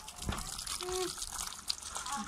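Water from a garden hose pouring and splashing onto feet in flip-flops and the wet concrete around them, as muddy feet are rinsed.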